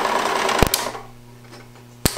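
Bell & Howell 16mm projector running with a steady hum and mechanical clatter as its worn, slick motor drive belt slips off the motor pulley. A sharp click comes about two-thirds of a second in, then the machine runs down and goes quiet.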